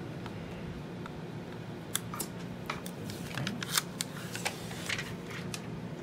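Plastic protective film being picked loose with a fingernail and peeled off the metal casing of a slim external DVD writer: a run of sharp crackles and clicks starting about two seconds in and lasting a few seconds.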